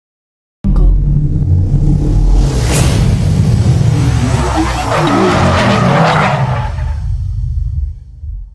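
Sound effects for an animated intro logo: a heavy car-engine-style rumble mixed with music, starting suddenly. A sharp whoosh comes a little under three seconds in, and a brighter rush builds after five seconds before the sound drops away at the end.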